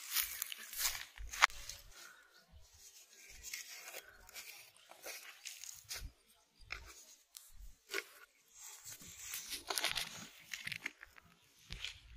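Close-up handling noise of bait preparation: rustling and crackling of a plastic bag and dry bait mix, with scattered clicks and taps. The loudest is a sharp click about a second and a half in, and there is a longer stretch of rustling near the end.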